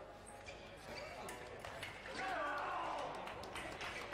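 Foil fencers' footwork on the piste, with shoes stamping and squeaking and short clicks of blade contact. About halfway through comes a loud wavering voice that falls in pitch, the kind of shout fencers give as a touch is scored.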